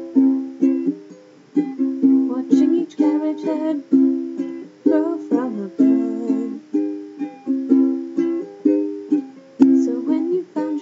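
Ukulele played softly in strummed chords, about two strums a second, each chord ringing out before the next, picked up by a laptop's built-in microphone.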